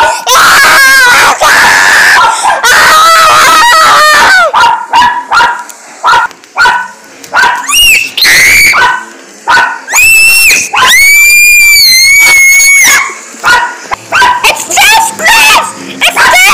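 A small dog screaming and yelping in loud, high-pitched cries: a run of short cries, then two long, drawn-out ones near the end. Its owner thinks it may be set off by the thunderstorm.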